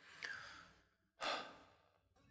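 A person's breath, two soft sighs about a second apart, picked up close to a studio microphone.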